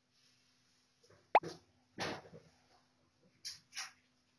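A single short popping sound effect with a quick pitch sweep about a second in, followed by a few quieter brief noises over a faint steady hum.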